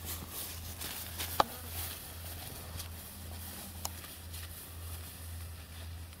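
Footsteps swishing through tall grass, with two sharp clicks about one and a half and four seconds in, over a steady low hum.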